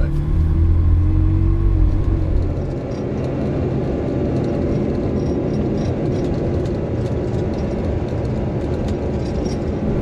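Ferrari 360's mid-mounted V8 heard from inside the cabin while driving, its note rising a little in the first two seconds. About two and a half seconds in, the sound changes to a steadier rumble of engine and road noise.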